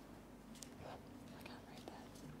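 Near silence: room tone with a faint steady hum and a few faint, brief soft sounds.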